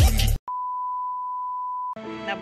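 A single steady, high beep tone, edited in, held for about a second and a half. It starts just after loud bass-heavy electronic music cuts off suddenly near the start.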